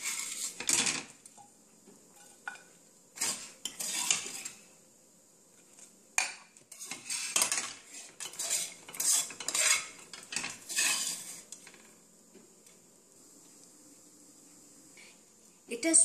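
A spoon and spatula scraping and clattering against a nonstick frying pan as cooked semolina (rava) mixture is scraped out onto a plate, in irregular bursts that stop for the last few seconds.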